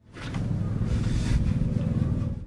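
A steady low rumble with a hiss above it, swelling in over the first moment and then holding.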